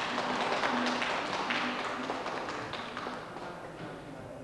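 An audience applauding at the end of a song, the clapping dying away near the end.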